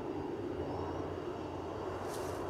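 A steady low background rumble, even in level throughout.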